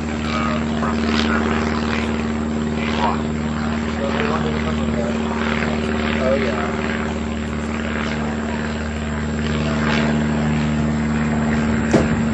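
A steady motor drone, a constant low hum that holds one even pitch throughout, with faint indistinct voices over it.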